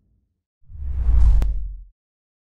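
A whoosh sound effect for a logo animation, with a deep low rumble under it. It swells in about half a second in, peaks with a sharp tick, and fades out just before the end.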